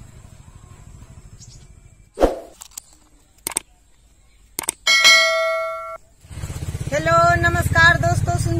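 Subscribe-button sound effect: a whoosh, two quick clicks, then a bell chime that rings for about a second and fades.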